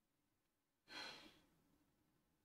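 A woman's single short sigh, a breathy exhale about a second in, fading within half a second; otherwise near silence.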